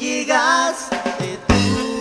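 Upbeat Latin-style Christian praise song played by a band led by a drum kit. A wavering held note sounds in the first second, and a loud drum hit comes about one and a half seconds in.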